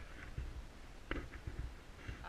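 Low, uneven rumble of wind buffeting the microphone, with one faint click about a second in.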